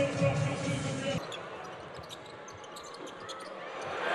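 Basketball game sound on an arena court: a louder burst of voices and crowd noise cuts off about a second in. After it, a quieter stretch of scattered ticks from the ball bouncing on the hardwood floor, over a low crowd murmur.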